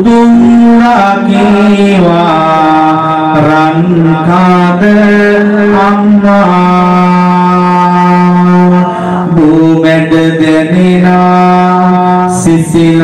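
A Buddhist monk chanting verses into a microphone in a slow, drawn-out melody, holding long notes, one of them for about two and a half seconds past the middle.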